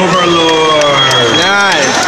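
A man's voice calling out in one long drawn-out note that slides down, then a shorter rise and fall: an announcer stretching out the winner's name.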